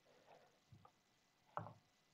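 Near silence: room tone, with one faint short sound about one and a half seconds in.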